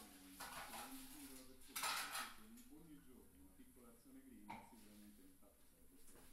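Faint handling noises at a kitchen table, a short scrape or rustle about two seconds in and a weaker one about four and a half seconds in, with a faint low voice underneath.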